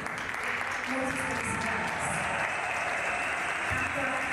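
Audience applauding steadily, with voices faintly underneath.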